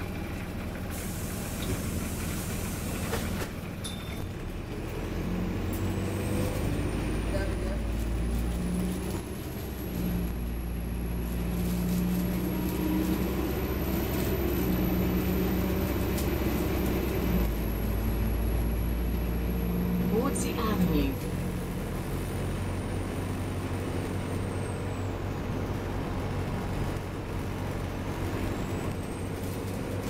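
Optare Versa single-deck diesel bus heard from inside the saloon while under way. Its engine and drivetrain drone builds for several seconds and then eases back about two-thirds of the way through, with a short rattle where it drops. A faint high whine rises and falls over it, and there is a hiss of air about a second in.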